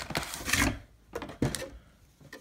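Foil-wrapped trading card packs and a cardboard box being handled: rustling for the first part of a second, then a few light knocks and taps.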